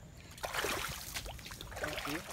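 Footsteps wading through shallow water, splashing, starting about half a second in.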